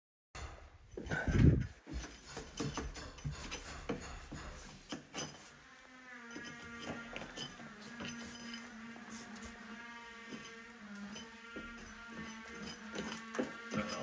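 Old lime plaster being scraped and picked off a damp wall by hand, with scattered small scrapes, clicks and crumbling bits falling; a heavy low thump comes about a second in. Soft background music with held notes comes in about halfway through.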